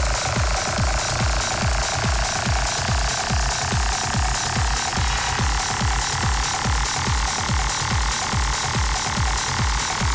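Techno track with a steady four-on-the-floor kick drum at about two beats a second. Above it a dense synth layer slowly rises in pitch.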